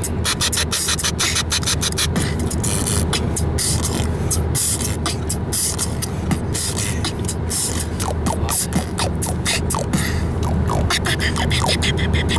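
Mouth beatboxing: rapid snapping, hi-hat-like percussive strokes, several a second, with short falling squeaks near the end, heard inside a moving car's cabin over its steady low road hum.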